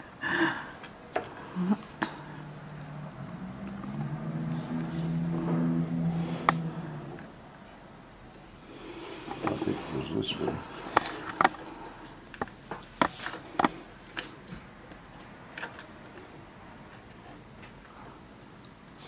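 Short sharp plastic clicks and taps of wire-harness connectors being handled and fitted onto a heat press's control board. A low voice sounds for several seconds from about two seconds in.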